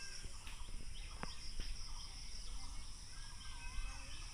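Steady high-pitched chorus of insects, with faint wavering bird calls over it. There are a few sharp clicks and a low rumble of handling noise as the phone is carried.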